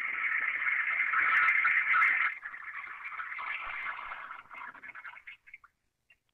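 Toilet-flush sound effect played through a small, tinny loudspeaker: a rush of water, loudest for the first two seconds, then tailing off and breaking up before it stops near the end.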